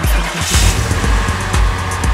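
Electronic background music with a steady beat, with a car sound effect laid over it: a rushing swell that is strongest about half a second in and then fades.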